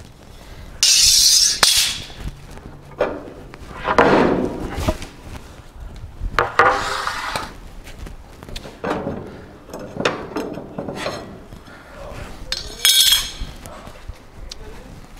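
Wooden bed-floor boards being worked loose and lifted out of a classic pickup's steel bed: a series of separate scrapes, knocks and metallic clinks as the wood shifts against the steel bed strips.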